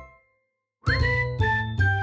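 Chiming, bell-like outro jingle music over a bass line. It fades out just after the start, stops for about half a second, then comes back with a quick upward swoop followed by notes stepping down in pitch.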